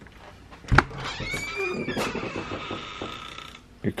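A door being unlatched and opened: a sharp clunk a little under a second in, then creaking and squeaking for a couple of seconds.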